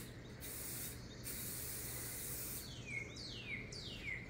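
Aerosol spray paint can (Krylon paint-and-primer) hissing as paint is sprayed onto rough old pallet wood: a short burst, a brief pause, then a longer burst that stops about two and a half seconds in. Then a few quick downward-sweeping bird chirps, one after another.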